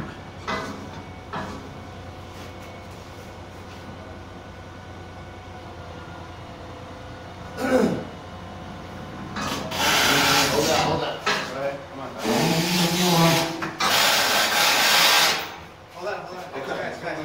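A heavy metal frame being worked in through a window by hand: a few knocks at first, then several loud bursts of scraping noise, each a second or so long, in the second half.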